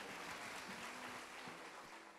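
Faint hiss with no tune, slowly fading out: the tail left after the music has stopped.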